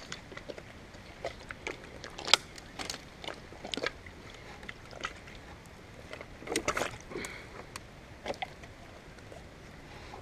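Footsteps on a logjam of driftwood and dry brush, with scattered snaps and cracks of sticks underfoot. The sharpest crack comes a couple of seconds in, and a short cluster comes later, over a low steady hiss.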